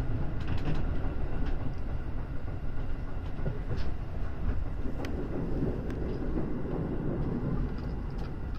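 Electric train running on the rails, heard from inside the front car: a steady low rumble with occasional sharp clicks, getting slowly quieter as the train pulls into a station.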